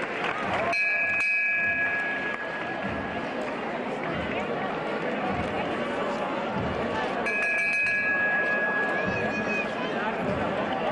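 Crowd chatter, with a small bell struck twice, about a second in and again about seven seconds in, each strike ringing on for a couple of seconds: the bell on a Málaga-style procession throne, the signal given to the bearers.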